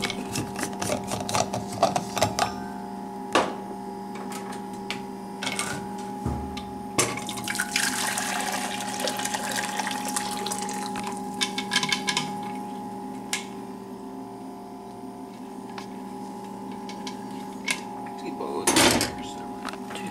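Water pouring or running into a saucepan for several seconds, starting about seven seconds in, among knocks and clatter of kitchenware being handled, over a steady hum.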